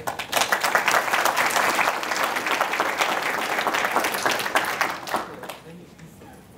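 Audience applauding, a dense patter of many hands clapping that begins just after the opening and fades out about five and a half seconds in.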